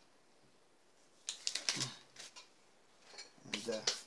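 A short cluster of sharp clicks and rustling handling noises about a second and a half in, from someone moving around at a workbench, then a man's brief 'uh' near the end.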